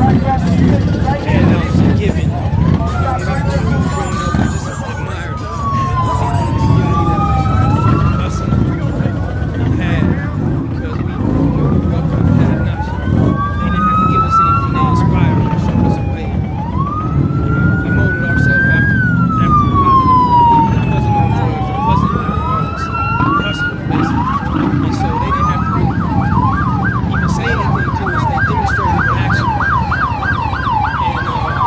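Emergency vehicle siren wailing in slow rising and falling sweeps, switching to a fast yelp about three-quarters of the way through, over the steady noise of a large crowd.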